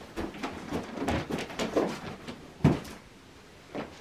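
Indoor handling noises: footsteps and scattered knocks as a cardboard box is carried into a room, with one louder thump about two and a half seconds in.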